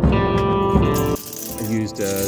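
Background music, and from about a second in the quick rattle of an aerosol spray-paint can being shaken, its mixing ball knocking inside the can.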